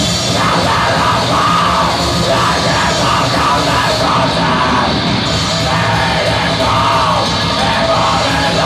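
Black metal band playing live and loud: distorted electric guitars and drums in a dense, unbroken wall of sound, with harsh screamed vocals over it.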